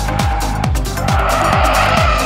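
Electronic dance music with a fast, steady kick drum. About a second in, the tyres of a Ford Sierra Cosworth squeal as the car slides through a corner.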